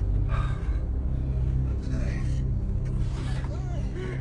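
A car engine running low and steady, with short voice sounds over it.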